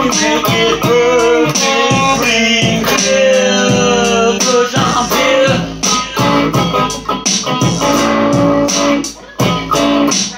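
Electric guitar playing a melodic line with some bent notes, over a steady beat.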